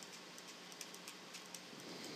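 Faint, scattered light clicks of a stylus tapping and sliding on a pen tablet during handwriting, over a quiet hiss of room tone.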